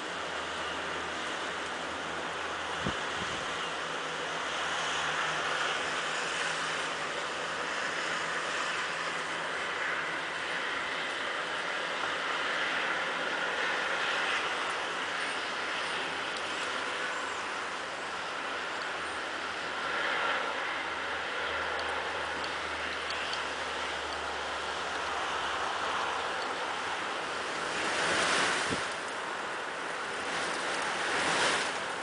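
Steady rushing of stormy wind outdoors, swelling and easing, with a stronger gust near the end. A single short click about three seconds in.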